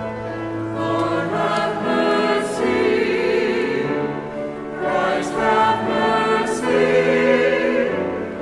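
A small church choir singing a slow piece in long, held phrases with vibrato.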